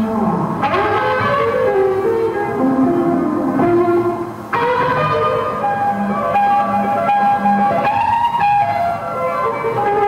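Live blues-rock trio playing: electric guitar lead with held, bending notes over bass guitar and drums.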